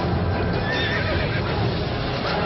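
A horse whinnying once, a short wavering call a little over half a second in, over film score music.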